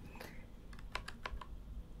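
A quick run of about six light computer-key clicks, from a little over half a second in to about a second and a half, as chess moves are stepped through on the computer.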